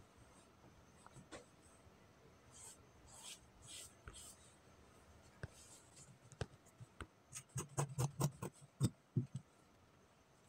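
Faint scratching of a marker drawn over fabric as a neckline is marked out, followed by a quick run of light clicks and knocks in the last few seconds as tools are handled on the cutting table.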